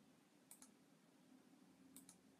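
Near silence: faint room hum with a few soft clicks in two quick pairs, about half a second in and near the end.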